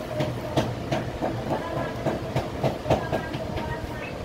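A run of light clicks and taps, about three a second, over a steady hum.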